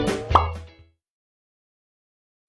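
The tail of a short title-card music jingle with a deep bass beat, capped by a quick rising pop sound effect about a third of a second in. It then fades out within the first second, leaving dead silence.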